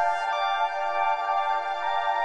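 Slowly evolving ambient synthesizer drone from a Geodesics Dark Energy complex oscillator, frequency- and ring-modulated and run through the Dawsome Love ambient effects plugin. It holds a dense cluster of steady overlapping pitches in the mid range, with no bass and an even level.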